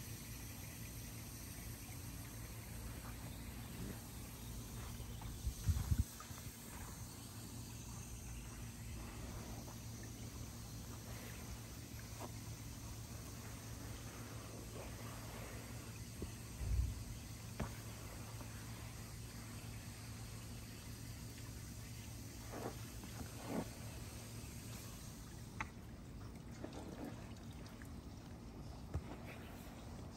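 Faint, soft sliding and squelching of oiled hands and forearms gliding over skin during a massage stroke, over a steady low hum, with a couple of dull thumps about six and seventeen seconds in.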